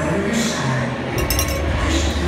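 Arena music over the PA mixed with crowd noise in a hockey rink, with a brief cluster of sharp clinks a little over a second in.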